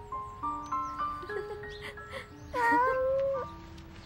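A house cat gives one long meow about two and a half seconds in. It is the loudest sound, over gentle melodic background music that moves in sustained notes.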